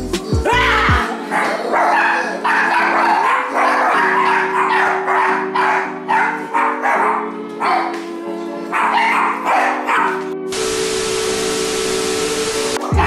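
A small dog barking and yipping over and over, over background music with steady held notes. About ten and a half seconds in, a burst of loud TV static with a steady tone cuts in.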